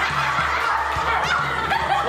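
A group of young people laughing together, many voices at once.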